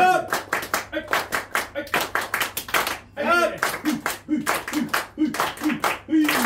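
A group clapping hands together in unison, in quick even rounds: the tejime, the ceremonial rhythmic clapping that closes a Japanese gathering. A voice calls out at the start and again about three seconds in, leading a round of claps.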